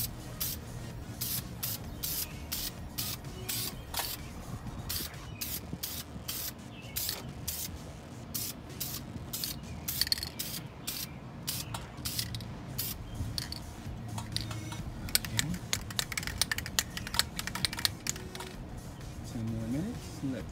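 Aerosol spray can of caliper enamel paint sprayed in many short bursts, each a brief hiss; the bursts come irregularly at first and quicker and closer together in the last few seconds.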